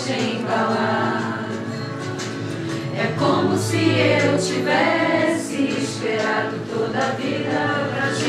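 A choir of voices singing a song.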